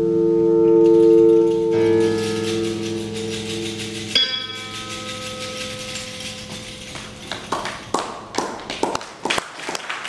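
Amplified string instruments holding long, ringing, bell-like notes that change pitch twice and fade as a piece ends. From about seven and a half seconds in, scattered clapping begins.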